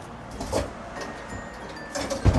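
Claw machine's gantry motor running softly as the claw lifts back up, with faint electronic chime tones from the arcade machines.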